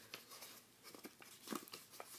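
Faint crinkling of a square sheet of paper handled and creased by hand as it is mountain-folded, with a few short crackles, the clearest about a second and a half in.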